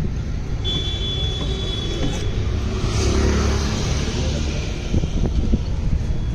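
Road traffic over a steady low rumble, with a motor vehicle's engine swelling as it passes about three seconds in.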